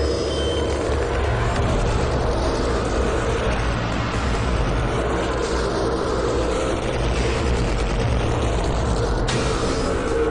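Soundtrack of a slideshow video: music mixed with a steady, dense low noise.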